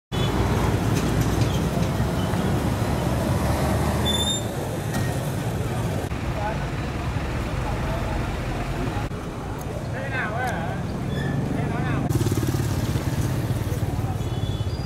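Engines of trucks standing in stopped traffic idling, a steady low rumble, with people's voices talking in the background. The sound changes abruptly several times.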